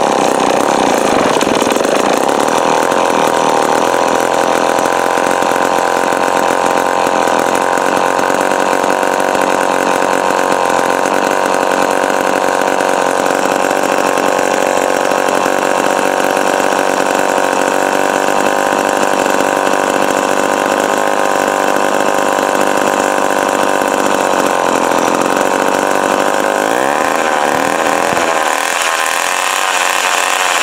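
Remington Super 754 two-stroke chainsaw running steadily on choke, its pitch wavering near the end as the engine speed shifts. The saw is cold-natured and will only run on choke, which the owner thinks may be the carburettor.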